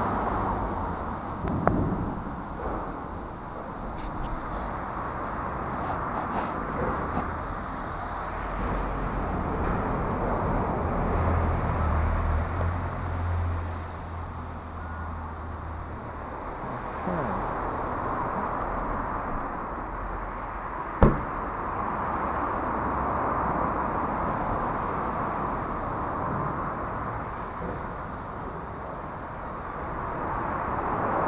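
Steady road traffic noise from the flyover overhead, with a deeper rumble for a few seconds near the middle. There is a single sharp click about two-thirds of the way through.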